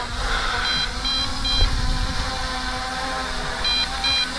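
MJX Bugs 5W quadcopter's motors and propellers humming steadily in flight, with a low rumble. Two groups of three short high beeps, about a second in and again near the end: the warning that the flight battery is past half.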